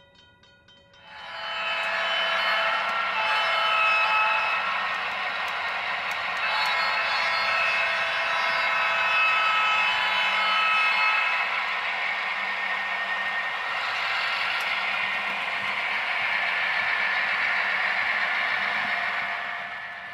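Onboard sound of HO-scale Southern Pacific GP9 diesel locomotives from their LokSound DCC decoders as the model train runs past: steady diesel locomotive sound with several held tones, starting about a second in.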